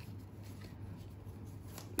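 Faint, soft rustling of a deck of tarot cards being shuffled by hand.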